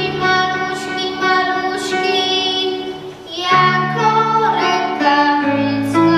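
Children singing a Polish Christmas carol (kolęda) with instrumental accompaniment, in held notes with a short break between phrases about three seconds in.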